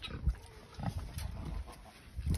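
A pig grunting, in low, short grunts.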